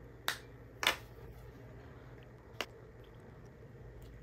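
Sharp clicks of a plastic marker cap being pulled off a felt-tip marker: two close together in the first second, then a fainter one past halfway.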